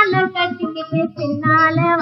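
A woman sings a Tamil film song, drawing out high, wavering notes with vibrato over instrumental accompaniment. It is an old film-song recording with a narrow, dull top end.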